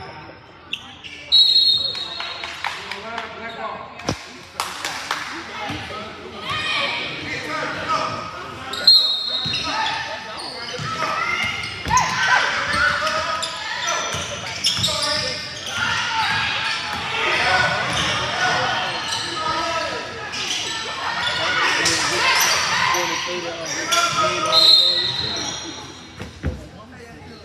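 Basketball game in an echoing gym: the ball bouncing on the hardwood floor while players and spectators shout indistinctly. Short, shrill whistle blasts sound shortly after the start, about nine seconds in, and near the end.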